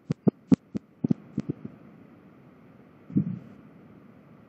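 A quick run of about eight sharp computer mouse clicks in the first second and a half as a Wi-Fi network menu is worked, then a brief low sound about three seconds in.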